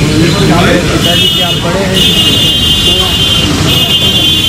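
Loud street noise: voices talking over traffic. A steady high tone sounds three times, each for about a second or more, at about one, two and nearly four seconds in.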